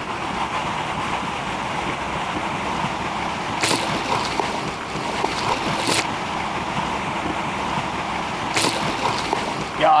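Steady rush of flowing river water and wind, broken by three brief sharp clicks about two and a half seconds apart.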